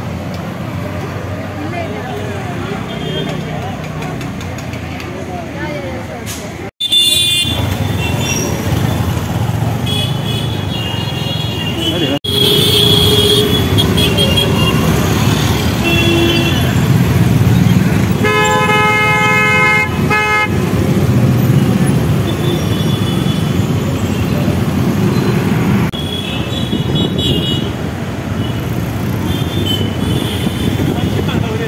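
Busy street traffic and crowd chatter with vehicle horns honking several times. The longest is a steady horn blast of about two seconds around two-thirds of the way through. The noise is lower for the first seven seconds, then louder.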